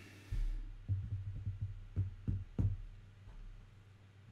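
A quick run of low, muffled thumps and knocks, the last few sharper, dying away after about three seconds.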